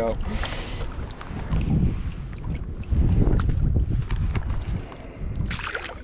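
River water sloshing and swishing close by as a trout is held in a landing net and let go, coming in low surges about a second and a half in and again around three seconds in.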